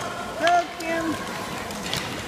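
A high-pitched voice calling out twice in quick succession, about half a second in, over the steady background noise of the rink, with a sharp click near the end.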